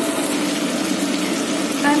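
Sauced capsicum and onion sizzling in a frying pan: a steady hiss. A woman's voice begins near the end.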